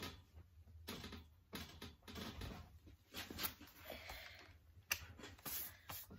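Rummaging and handling of objects: irregular light knocks, taps and rustles as things are moved about, with one sharper knock about five seconds in.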